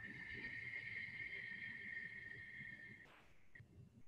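One long, slow breath out, about three seconds, with a faint steady whistle in it.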